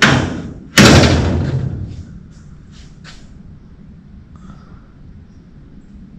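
Steel door of a Model A Ford coupe being shut: a light knock, then a loud slam about a second in that rings out briefly, followed by a few faint clicks.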